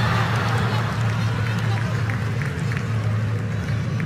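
Live soccer match field sound: a steady low hum and even background noise from the stadium, with a few faint short calls or ball touches from the pitch.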